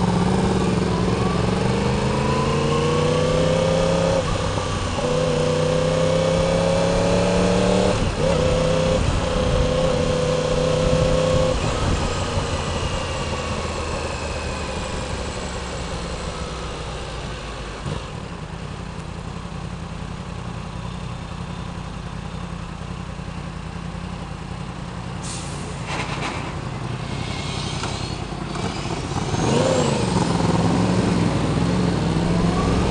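Motorcycle engine pulling away from a stop, rising in pitch through several upshifts over the first dozen seconds, then running steadily and more quietly at cruising speed with road and wind noise.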